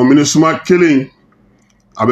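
Speech only: a voice talking for about a second, then a pause of about a second.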